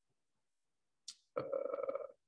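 About a second of near silence, then a short breath and a drawn-out, steady vowel-like hesitation sound from a man's voice heard over video-call audio.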